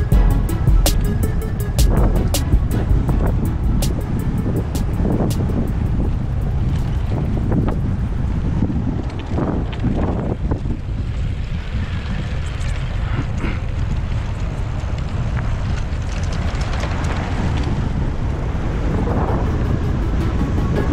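Wind buffeting the microphone of a rider-mounted action camera on a moving mountain bike, a steady low rumble, under background music with a beat about once a second that is clearest in the first few seconds.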